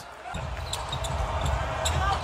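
Court and arena sound of a televised NBA game in play: a steady low rumble and hiss, rising in after a brief quiet moment at the start.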